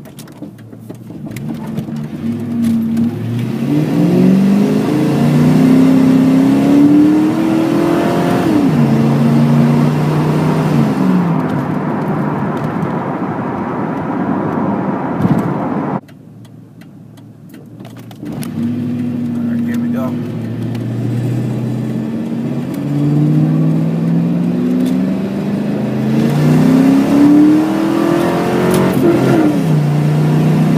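1997 Ford Mustang GT's 4.6-litre two-valve V8 with Flowmaster Super 44 exhaust pulling hard, its note climbing in pitch and dropping back at each gear change. Just past halfway it goes much quieter for about two seconds, then climbs through the gears again.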